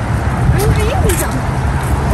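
A loud, steady low rumble of outdoor noise, with a brief stretch of a person's voice about half a second to a second in.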